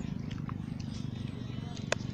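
Bolo knife cutting and prying into the soft core of a coconut palm trunk, with one sharp knock near the end, over a steady low pulsing rumble.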